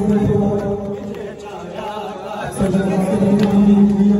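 A man chanting a noha (Shia lament) into a microphone, with two long held notes separated by a quieter stretch.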